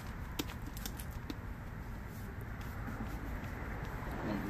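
A few light plastic clicks in the first second or so as the pump head of a hand-pump sprayer bottle is fitted and screwed down, over steady low background noise.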